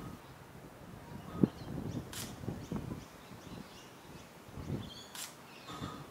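Sony NEX-5R's shutter clicking once about every three seconds as it shoots a time-lapse, over quiet outdoor ambience; a single louder low knock comes about one and a half seconds in.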